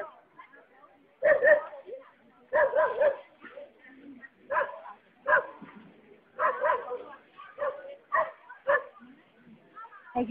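A dog barking repeatedly at irregular intervals, in single barks and short runs, about a dozen in all.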